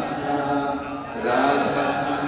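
A man chanting prayers into a microphone in long, held melodic phrases; a brief pause just past a second in, then a new phrase begins.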